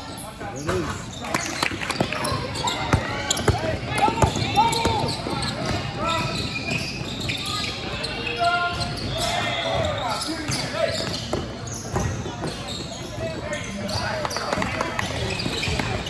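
Basketball game sounds in a large gym: a ball bouncing on the court with sharp knocks, under a steady background of voices calling out from players and spectators.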